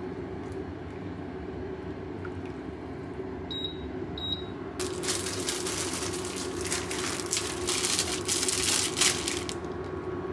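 Plastic packaging of a block of boiled udon crinkling and being torn open for about five seconds, starting about halfway through and louder than anything else. Under it the broth heats steadily in the pan. Two short high beeps come just before the crinkling.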